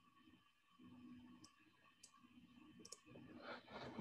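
Near silence with a few faint computer-mouse clicks, spaced about half a second to a second apart.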